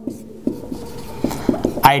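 Handwriting: a series of short, irregular strokes and taps, over a faint steady hum.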